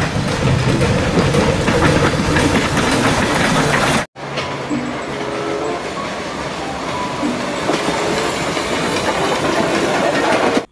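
Steam locomotives running along the track: a dense, steady din of wheels on rails and working engine. The sound breaks off for an instant about four seconds in, where one locomotive clip gives way to another.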